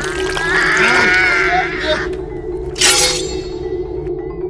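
A woman screaming for about two seconds, her wavering cry over a steady music drone, then a short sharp crash about three seconds in.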